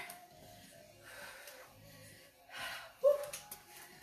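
Hard, breathy exhales from a person mid-workout, twice, over faint background music with a steady beat, then a short cheering "woo" about three seconds in.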